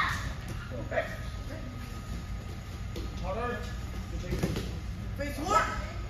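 Short shouted taekwondo calls, three of them about two seconds apart, over a steady low hum.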